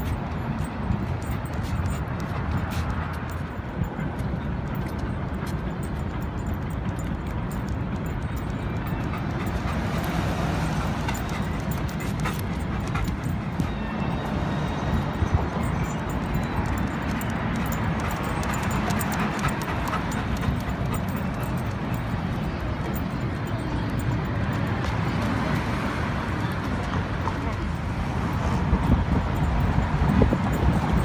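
Steady city traffic noise from a busy road, with indistinct distant voices mixed in.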